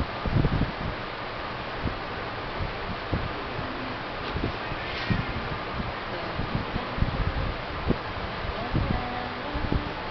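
Rustling and soft low thumps of clothing and movement as a baby is held and shifted on a lap, over a steady background hiss.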